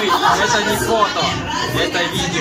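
Several people talking at once in a large hall, with music playing in the background.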